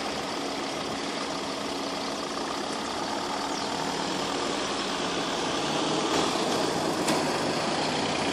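Queued car engines idling at a level crossing, growing a little louder near the end as traffic begins to move off over the crossing.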